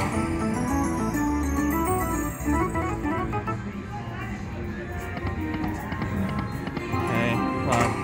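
Lock It Link Hold On To Your Hat slot machine playing its free-games bonus music, with a run of short stepped notes as the reels land and the win meter counts up.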